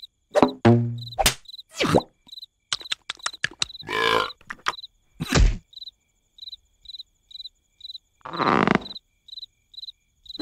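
Crickets chirping at a steady rate of about three chirps a second, as a night ambience in the cartoon. Short loud cartoon sounds cut through it: a grunt-like voice early on, a few clicks, and two longer rasping, breath-like noises, one in the middle and one near the end.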